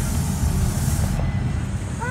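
Bus cabin noise: a low engine and road rumble with a steady high hiss. About a second in, the hiss cuts off abruptly and a lower rumble remains.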